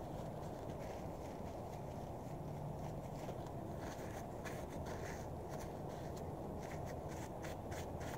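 Brown paper napkin rustling and crinkling as greasy fingers are wiped, with a quick run of crisp crackles near the end, over a steady low background hum.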